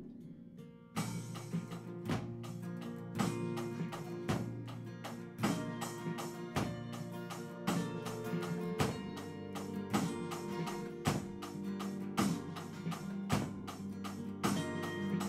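Acoustic guitar strumming chords together with a drum kit keeping a steady beat; after a few faint clicks the music starts about a second in.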